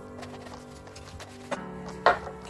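Ice cubes clinking as they are dropped one after another into a glass, with a sharper clink about one and a half seconds in, over quiet background music.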